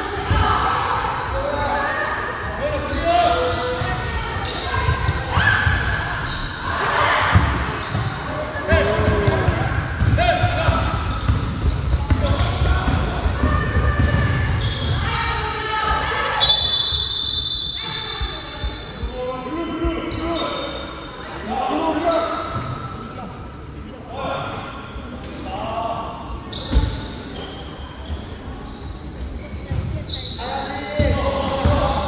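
A basketball bouncing repeatedly on a hardwood gym floor during live play, with voices in the large gym hall. A referee's whistle is blown once, about sixteen seconds in, for a little over a second.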